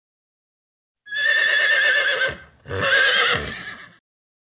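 A horse whinnying in two long quavering calls, the first starting about a second in and the second, after a short break, fading out near the end.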